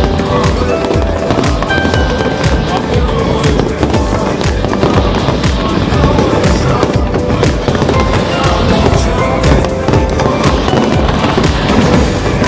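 Aerial fireworks bursting and crackling in quick succession, many sharp cracks and pops over a continuous rumble, with music playing along.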